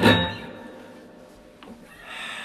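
Electric guitar harmonic struck sharply, a bright ringing chime that fades quickly over about half a second and then rings on faintly, as the final note of the song.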